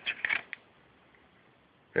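A few short scrapes and clicks of a steel-backed connecting rod bearing shell being pushed into its rod cap by hand, all within the first half second, then quiet.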